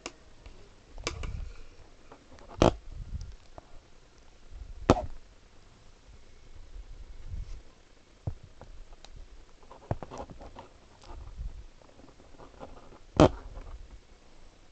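Close handling noise from hands working rubber bands on a metal crochet hook: scattered sharp clicks and taps with dull low bumps between them. Three clicks stand out, one about three seconds in, one about five seconds in and one near the end.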